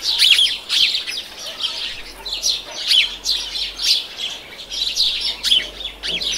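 Birds chirping: many short, falling chirps in quick succession, some overlapping.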